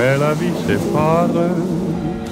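A person's voice gliding up and down in pitch over steady low tones.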